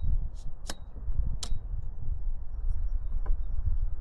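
Wind buffeting the camera's microphone, an uneven low rumble. Sharp clicks cut through it three times in the first second and a half, about three quarters of a second apart, and once more a little past three seconds.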